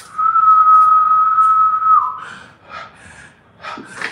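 A single steady, high whistle held for about two seconds, dipping slightly in pitch as it ends, then a few faint short noises.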